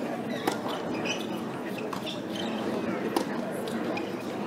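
Tennis ball struck by rackets during a doubles rally on a hard court, a sharp pop about half a second in and the loudest one a little after three seconds, over a murmur of spectators' voices.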